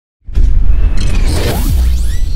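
Logo-intro sound effect: a loud whoosh over a deep, sustained bass rumble, starting about a quarter second in.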